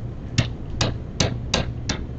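A pen stylus tapping and clicking on an electronic writing surface during handwriting, about five sharp ticks a little under half a second apart.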